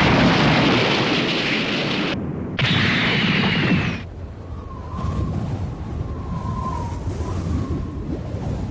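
Animated explosion sound effect: a loud, rumbling blast that hits again about two and a half seconds in, then cuts off sharply about four seconds in. A quieter hiss with a faint wavering high tone follows.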